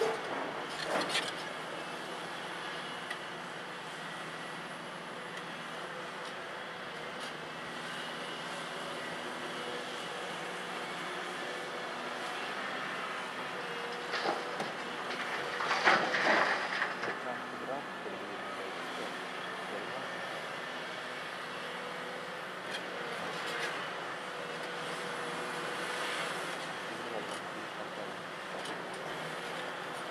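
Volvo EC700B LC crawler excavator's diesel engine running steadily under load as it works. About halfway through comes a loud rattling crash of rock dumped from the bucket into the bed of an articulated dump truck.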